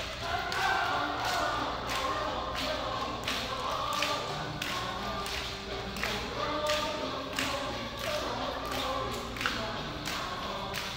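Many voices singing together like a chorus over a steady beat of thumps, about two a second.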